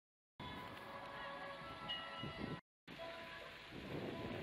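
Soft ambient sound with several steady ringing, chime-like tones over a hiss. It cuts to dead silence at the very start and again for a moment just past halfway.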